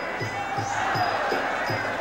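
Muay Thai ring music (sarama) over crowd noise: a drum beating about three times a second with a small cymbal ting on each beat. The crowd rises briefly in the middle.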